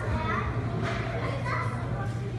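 Indistinct chatter of children and other people talking in the background, over a steady low hum.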